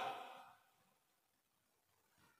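Near silence in a pause between a man's sentences: the end of his last word fades out in the first half second, then nothing.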